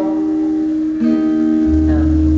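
Acoustic guitar playing slow, ringing chords, changing chord about a second in. A deep low note joins near the end.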